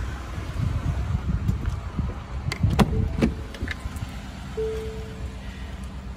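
Pickup truck door being opened: rumbling wind and handling noise, then a few sharp clicks of the door handle and latch about two and a half to three seconds in, followed by short steady beeps.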